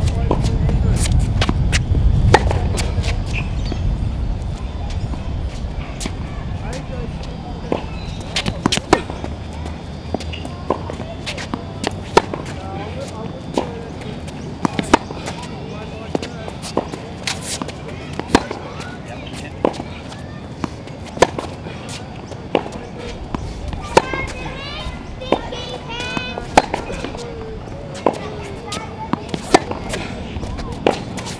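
Tennis groundstrokes on an outdoor hard court: sharp pops of the ball off the racket strings and the ball bouncing on the court, roughly every one and a half seconds. Wind rumbles on the microphone in the first few seconds.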